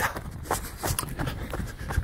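A runner's footfalls on a dirt trail, a few each second, with his breathing and a low rumble of wind and handling on the handheld camera's microphone.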